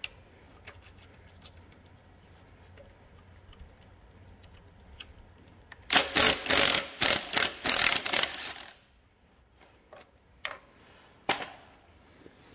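A rusty bolt on the front gear cover of a 1936 Caterpillar RD-4 engine being loosened with a wrench and backed out: faint metal clicks, then about three seconds of loud rapid metallic clicking and scraping, with a couple of sharp clicks near the end.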